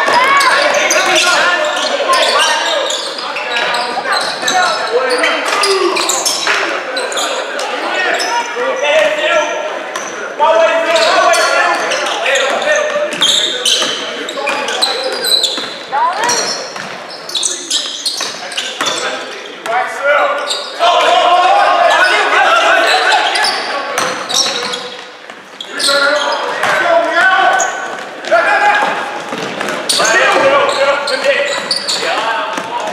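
Live basketball game on a hardwood gym floor: the ball dribbling, sneakers squeaking and players and spectators calling out, all echoing in the hall.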